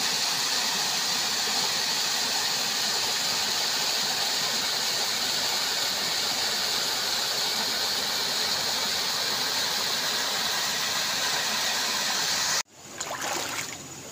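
Small waterfall cascading over rocks into a stream: a loud, steady rush of falling water. It cuts off suddenly about a second before the end, leaving quieter running stream water.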